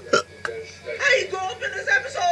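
A man's voice talking and exclaiming, with a short sharp click about half a second in.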